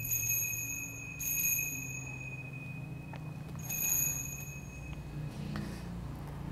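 Altar bell rung three times at the elevation of the consecrated host: at the start, about a second in and about four seconds in, each ring dying away slowly. Low steady held tones sound underneath.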